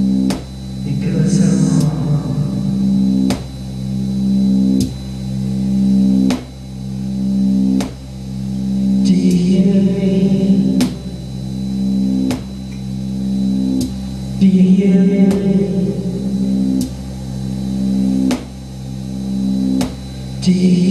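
Live electronic music played on a keyboard synthesizer: sustained droning chords that swell in loudness, cut by a sharp beat about every second and a half.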